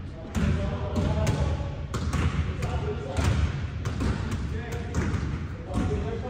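Basketballs bouncing on a hardwood gym floor, dribbled in irregular thuds about twice a second, ringing in the large hall.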